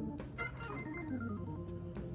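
Background music on an organ-like keyboard: held chords over a steady bass note, with a melody stepping up and down.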